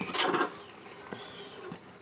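Brief handling noise as a washing-machine spin-dryer motor is handled and set down on a concrete floor, then quiet with a faint click about a second in.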